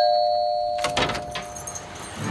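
Two-tone ding-dong doorbell chime ringing out and fading, with a few sharp clicks about a second in.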